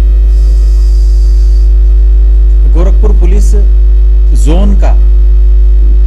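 Loud, steady electrical mains hum at about 50 Hz with its overtones, swamping the audio. A man's voice comes through only faintly, in two brief snatches about three seconds in and again a second and a half later.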